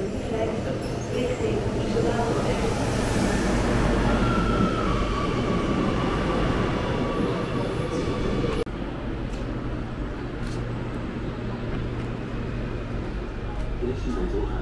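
Amsterdam metro train pulling into the platform: rumbling wheels on the rails, with a whine from the drive and brakes that dips slightly in pitch as it slows. About two thirds of the way through, the sound cuts abruptly to the quieter, steady low hum inside the train car, with a few clicks.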